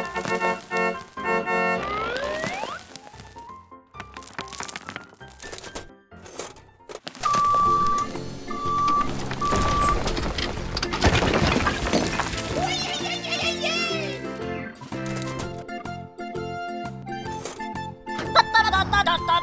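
Children's background music with cartoon sound effects: a rising glide early on, three short beeps near the middle, then a rush of clattering noise as a toy dump truck tips out a load of rocks.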